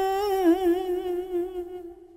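A chanter's voice holds the last drawn-out note of a Vietnamese Buddhist poem recitation. The steady note breaks into a wavering vibrato about half a second in, then fades away near the end.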